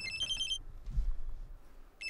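Phone ringtone: a quick melody of high electronic notes that breaks off about half a second in and starts again at the end, with a low thump in the gap.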